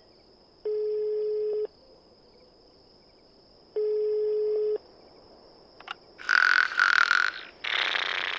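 Telephone ringback tone from a phone held to the ear while a call is placed: two steady tones of about a second each, three seconds apart, as the line rings. Near the end a click, then a short louder noisy sound.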